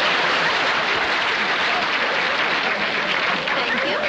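Audience applauding, a dense steady clapping throughout.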